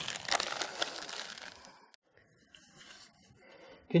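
Rustling and crinkling as padding is tucked into a leg splint and its straps are handled, fading out after about a second and a half into quiet.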